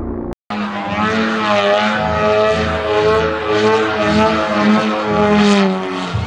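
Engine and propeller of a radio-controlled Extra 330SC aerobatic model plane in flight: a loud, steady pitched drone with small swells in pitch. It starts abruptly after a brief silence about half a second in.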